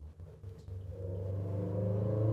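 A car's engine hum, low and steady, growing louder over the two seconds.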